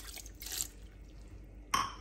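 Water poured from a plastic cup into a pressure cooker pot of meat and vegetables, trickling off within the first second, then a single short knock near the end.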